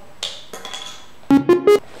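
Three short buzzy synthesizer notes, each a little higher in pitch than the last, played as an electronic sound effect. They are preceded by a brief soft hiss near the start.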